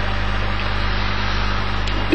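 Steady electrical mains hum with hiss from a public-address recording.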